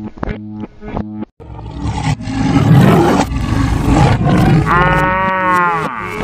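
Cartoon animal-call sound effects over background music. A loud, rough call fills the middle, and a long pitched call that rises and then falls comes near the end.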